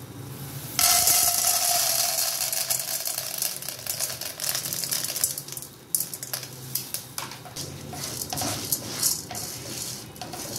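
Dry popcorn kernels poured into an oiled wok: a loud rattling pour that starts suddenly about a second in and lasts a few seconds. Then the kernels click and scrape against the pan as they are stirred with a silicone spatula.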